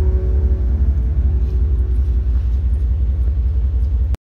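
Pickup truck engine idling: a low, steady rumble.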